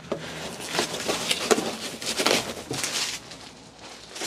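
Plastic bubble wrap rustling and crinkling in irregular bursts as it is pressed into a cardboard box, dying down near the end.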